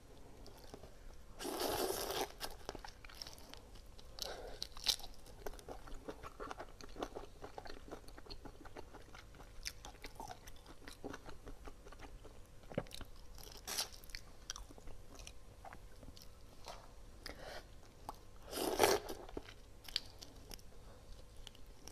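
Shell of a whole sauced shrimp cracking and crackling as it is broken apart and peeled by hand: a loud crunch about two seconds in, then many small clicks and crackles. A second loud crunch comes shortly before the end as the shrimp is bitten.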